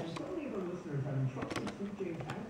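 A voice from an FM country radio broadcast, with a low tone that comes and goes beneath it.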